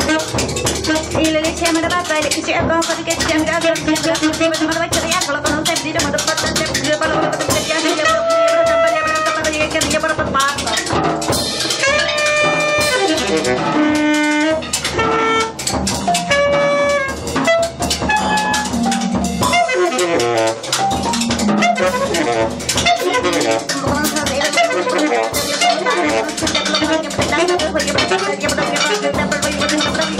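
Free-improvised jazz played live: a drum kit with busy cymbal and percussion strokes under saxophone, bass marimba and a wordless voice. There is a run of short held notes that step up and down near the middle.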